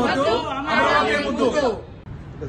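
A group of men and women chanting a slogan together in Telugu, breaking off shortly before the end.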